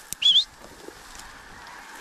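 An animal's short, high, squeaky call rising in pitch, once, a quarter-second in, over a steady background hiss.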